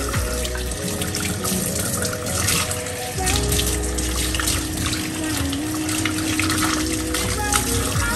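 Kitchen faucet running into the sink, the stream splashing on an espresso portafilter as it is rinsed out.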